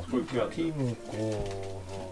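A man's low voice humming and murmuring without clear words.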